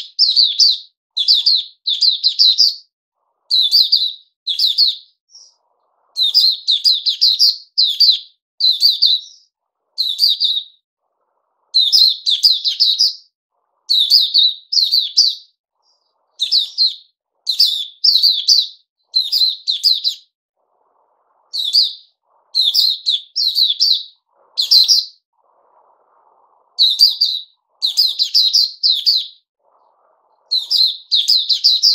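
A caged white-eye singing: short, high, rapid twittering phrases, one after another with brief gaps between them.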